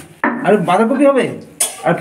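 Metal pots and utensils clanking in a kitchen, with a sharp clank about a quarter second in and another about a second and a half in.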